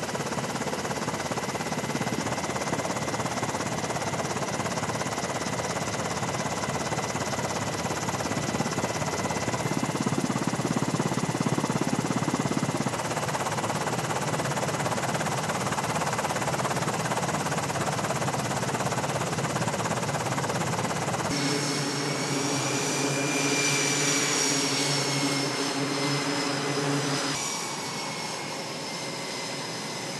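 Aircraft engine noise: a steady rushing roar with a faint high whine. About two-thirds of the way through it cuts to a different engine sound with several whining tones that rise and then fall, and it shifts again near the end.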